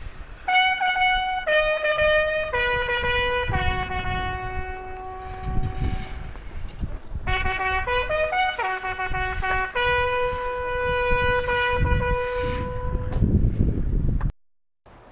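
Bugle call for the lowering of the flag: a slow line of separate held notes stepping down and back up, played twice through and ending on one long held note.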